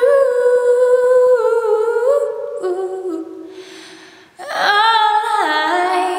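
A woman's solo voice singing a slow melody without accompaniment, in long held notes that step up and down. It fades after about three seconds, a breath is drawn, and the singing comes back about four and a half seconds in.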